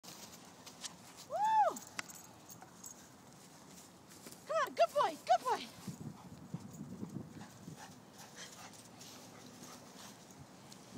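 A dog barking during play: one drawn-out bark about a second and a half in, then a quick run of about five short barks around the middle.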